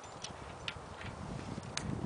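Three sharp metallic clicks of via ferrata carabiners knocking on the steel cable and fixings as the climber moves along, over a low rumble that builds in the second half.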